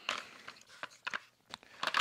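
A plastic vacuum floor nozzle being picked up and handled: a brief rustle at the start, then a few faint light clicks.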